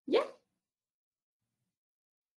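A single short spoken "yeah", then dead silence.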